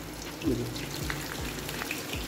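Rolled papad frying in hot oil in a pan: a steady sizzle with scattered small crackles.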